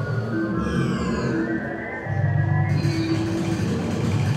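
Ambient electronic music: a sustained low drone with a steady higher note, and falling glides higher up in the first half.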